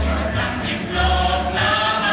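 Folk-dance music with a chorus of voices singing held notes over deep bass notes that come about once a second.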